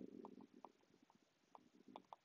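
Near silence, with faint scattered ticks of a stylus writing on a tablet.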